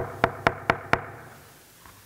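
Knocking: five quick knocks, about four a second, stopping about a second in.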